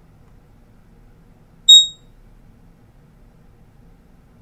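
A single short, high electronic ping from a trading platform's order notification, a little under two seconds in, dying away quickly: the sign that a market buy order has been placed and filled.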